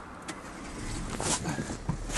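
A few sharp knocks and rustling as a person climbs in through the open door of a small car, getting louder towards the end.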